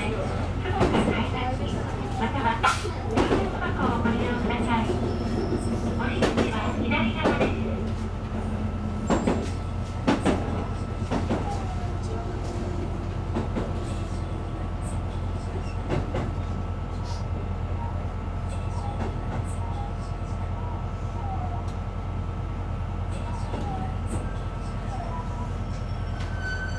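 Running noise inside a KiHa 220 diesel railcar under way: a steady low drone from the engine and running gear, with sharp clicks and knocks from the wheels on the track, frequent during roughly the first 11 seconds and sparser after that.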